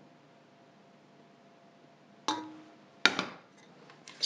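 Two metal clanks on a stainless steel mixing bowl, about three-quarters of a second apart, the second louder. The first leaves a short ringing tone from the bowl.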